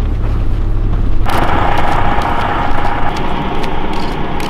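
Low, steady engine and road rumble inside a moving coach bus. About a second in it cuts abruptly to a louder, steady hiss with a faint hum and scattered light clicks.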